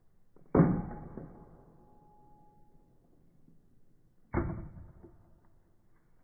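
Two sharp bullwhip cracks about four seconds apart. The first is followed by a faint ringing tone that fades over about two seconds.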